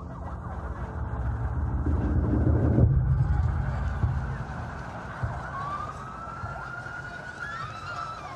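Siren sound effect in the song's instrumental outro over a low rumble of street noise. The rumble swells over the first three seconds and then eases, and one long siren wail rises slowly from about halfway through and starts to fall near the end.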